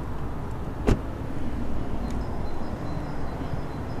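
The aluminium driver's door of an Audi A8 D3 being shut once, a single short knock about a second in, over a steady low background rumble.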